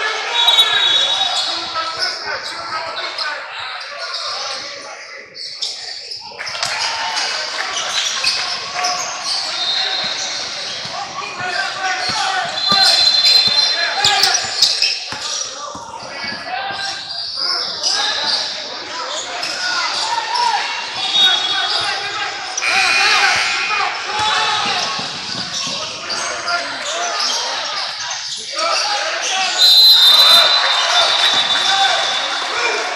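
Basketball game sound in a large, echoing gym: a basketball bouncing on the hardwood court under the talk of players and spectators.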